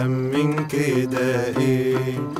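An Arabic song: a man singing to his own oud accompaniment, with plucked notes and a melody moving in steps.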